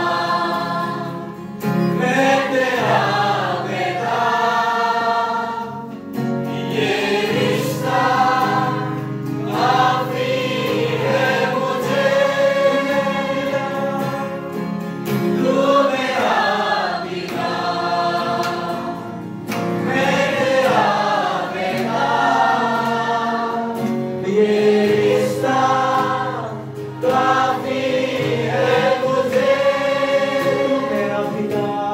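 A gospel worship song: voices singing long held phrases over a steady instrumental accompaniment, with short breaks between the lines.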